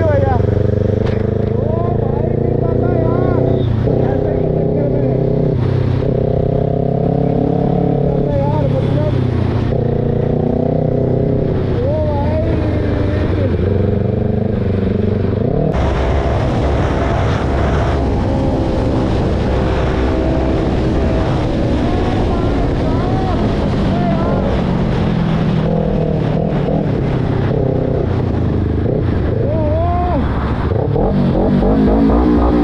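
Kawasaki Ninja ZX-10R's inline-four engine running while riding in traffic, its pitch slowly rising and falling with the throttle, under steady wind rush on the helmet microphone. About halfway through the rushing noise suddenly grows louder.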